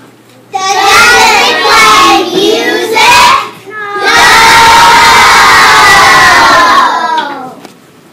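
A class of young children shouting together, then one long, loud group cheer held for about three seconds.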